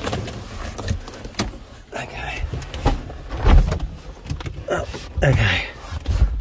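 Scattered knocks and rustles of someone moving about inside an old car's cabin, with a heavier low thump about three and a half seconds in.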